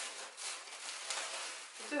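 Tissue packing paper and a cardboard box rustling and crinkling as hands dig through the parcel and lift out a cake of yarn.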